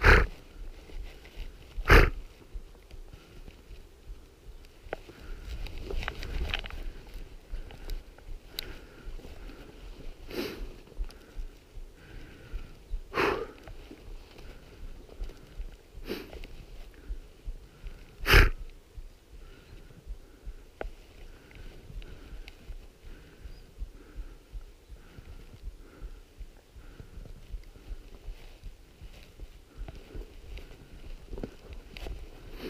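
A person walking through dry hillside scrub, with footsteps crunching and brush rustling, broken by several sharp knocks. The loudest knock comes about 18 seconds in. A faint short beep repeats a little more than once a second through the later part.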